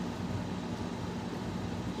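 Steady low hum of a ceiling fan running, with an even airy hiss.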